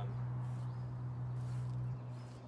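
A steady low hum, with a faint bird chirp about half a second in.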